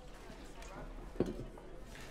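Faint background voices murmuring, with one short, sharp sound about a second in.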